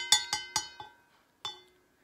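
A spoon clinking against the inside of a stainless steel Yeti tumbler as tea is stirred: a quick run of ringing clinks in the first second, then one more clink about halfway through.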